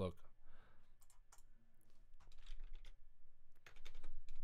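Computer keyboard typing and clicks, faint and in irregular short clusters, at a desk.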